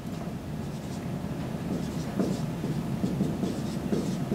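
Felt-tip dry-erase marker writing on a whiteboard: soft, faint scratching strokes as a short equation is written out.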